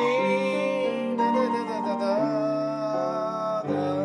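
Grand piano played slowly: held chords with a melody line above, moving to a new chord about two seconds in and again near the end.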